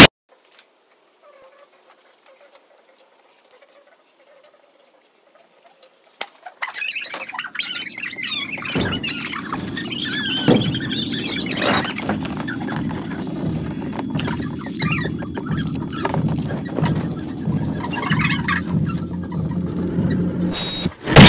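Near silence for about six seconds, then young kittens mewing with high, wavering cries over a low, steady rumble.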